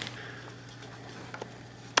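Faint rustling handling noise as a hermit crab in its shell is held and the camera is brought in close, over a steady low hum, with a sharp click near the end.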